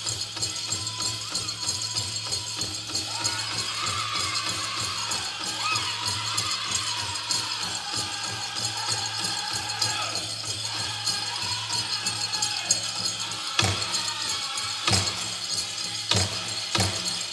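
Powwow drum group singing over a large hand drum struck in a steady beat, with the metal leg bells of Prairie Chicken dancers jingling throughout. Near the end the steady beat breaks into a few separate loud strikes.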